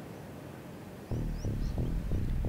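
Quiet background with a few faint high chirps, then music comes in suddenly about halfway through.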